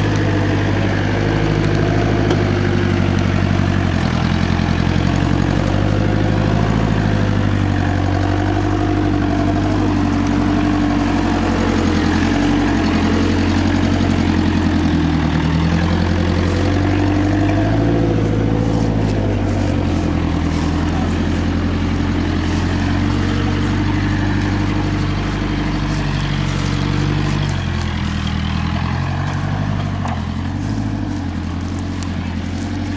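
Military Land Rover Series engine running at low revs as the vehicle crawls over a rutted off-road track, the engine note rising and falling a little with the throttle.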